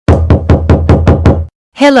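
Rapid knocking on a door: seven quick, even knocks at about five a second, stopping about one and a half seconds in.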